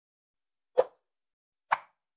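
Two short pop sound effects from an animated like-and-subscribe end card, a little under a second apart.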